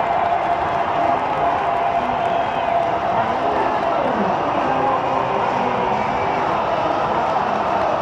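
Football stadium crowd cheering and shouting just after a goal: a steady wall of many voices, with single shouts and a held sung note standing out above it for the first half.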